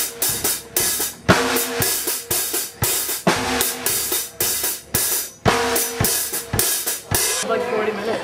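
Acoustic drum kit played with a steady beat of snare and drum hits under ringing cymbals, stopping about seven seconds in.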